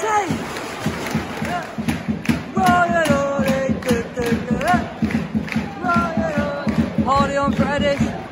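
Football crowd in the stands chanting and singing, voices held on long notes over a dense background of crowd noise.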